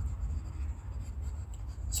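Quiet room tone in a pause between speech: a low steady hum under a faint even hiss, with no distinct sound events.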